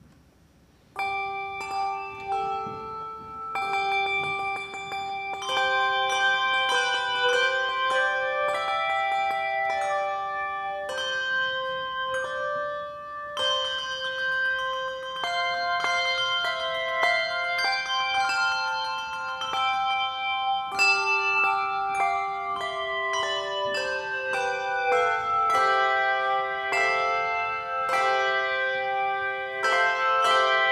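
A handbell choir ringing a piece in chords, starting about a second in, each struck note ringing on and overlapping the next.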